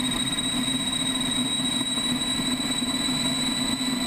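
Lightning LS-218 electric motorcycle running: a steady high-pitched whine over a low hum, with no exhaust note and no change in pitch.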